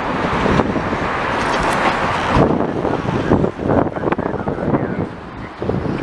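Freight train of tank cars rolling past below, a steady rumble that turns patchier and uneven about halfway through.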